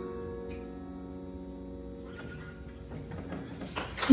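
The last chord of the song on an upright piano, ringing and slowly fading. Scattered claps and audience noise start in the second half and grow toward the end.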